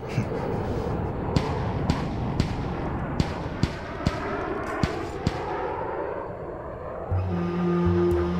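Documentary soundtrack: a steady rushing noise with a run of sharp thumps about half a second apart, then sustained music comes in near the end.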